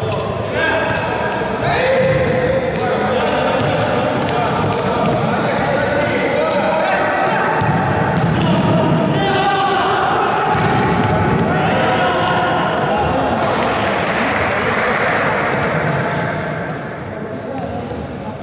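Futsal game in a large sports hall: voices shouting and calling over the play, with the ball kicked and bouncing on the wooden court. The loudness drops off near the end.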